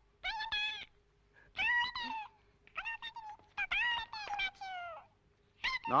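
A cartoon mouse's squeaky, high-pitched voice: about five short squeaking cries with wobbling pitch, voiced as the little animal calls out that there is a problem.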